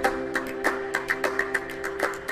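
Background music with a steady beat of about four strokes a second over held tones, light in the bass.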